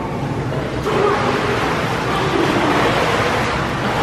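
Pool water splashing as children swim and doggy paddle, a steady splashing rush that grows fuller about a second in.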